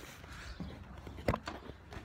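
A person climbing over a fence: faint shuffling and one sharp knock about a second in.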